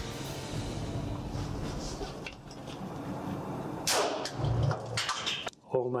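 Single rifle shot about four seconds in, a sharp crack followed by a rolling low echo. It comes after background music fades out.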